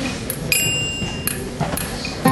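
About four light metallic ticks and pings, the clearest about half a second in with a short high ring after it, over a low steady hum of stage amplification, just before a live band starts playing.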